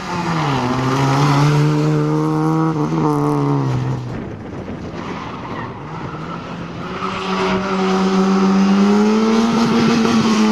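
Small Fiat hatchback's engine revving hard under acceleration, with a brief dip in pitch early on. About four seconds in it eases off for roughly three seconds, then builds again and holds at high revs.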